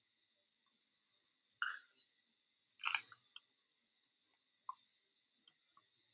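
Quiet room tone with a faint steady high whine, broken by a few short soft clicks, the loudest about three seconds in.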